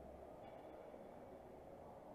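Near silence: faint, steady room tone of a large hall with a low hum.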